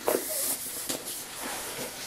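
Cardboard craft-kit box being handled: a sharp knock as it is moved, then soft rustling and a couple of light taps over a steady hiss.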